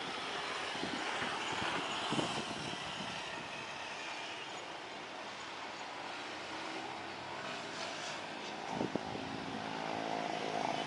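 Jet airliner on final approach and touchdown, its engines a steady rushing noise. There are a couple of short low thumps, one about two seconds in and another near the end.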